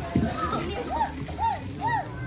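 Children's voices calling out: three short, high shouts, each rising and falling, about half a second apart, over low background chatter.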